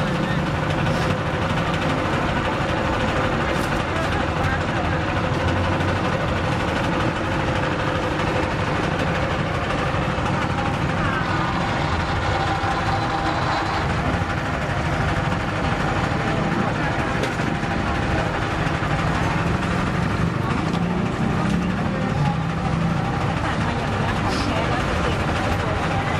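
Electric sugarcane roller juicer running with a steady hum, over continuous background chatter of a busy crowd.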